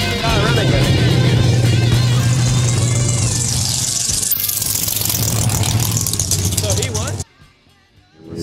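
Mega truck engine noise mixed with background music and voices. A steady low engine hum runs under the music, and a high rushing noise builds and then changes abruptly about four seconds in. The sound drops off sharply near the end.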